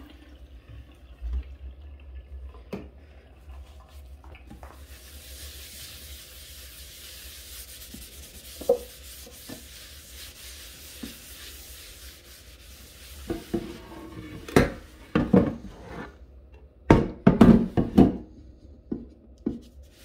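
A large bowl being washed by hand at a small kitchen sink. Water runs with rubbing for several seconds, then a run of loud knocks and clatters as the bowl is handled against the sink.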